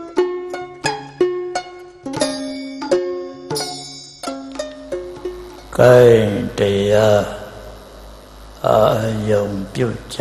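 Plucked-string instrumental music, a line of quickly fading notes about two or three a second, ends about five seconds in. A Buddhist monk's voice then intones long drawn-out syllables through a microphone and PA, over a low electrical hum.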